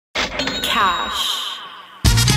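A short voice sample with a cash register ringing over it, fading out over about two seconds.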